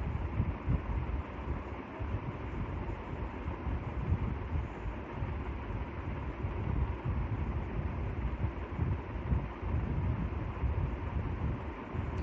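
Steady background rumble under a hiss, uneven in level, with a faint steady hum.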